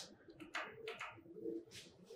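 Faint, low-pitched bird calls, a few short ones repeated.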